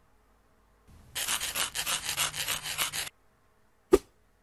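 Animation sound effects: about a second in, a fast, rhythmic scratching, like a marker scribbling, runs for about two seconds and stops, then a single short, sharp swish comes near the end as the scene is swiped away.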